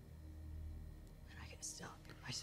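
A quiet, steady low hum, with faint whispered speech near the end.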